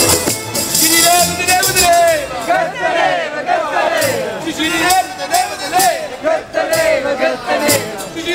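Acoustic street band playing a Neapolitan tarantella, with accordion, double bass and plucked strings, while a man sings loudly over it. Sharp percussive clicks mark a steady beat throughout.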